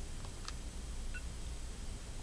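Quiet room tone: a steady low hum under faint hiss, with a couple of tiny clicks about half a second and a second in.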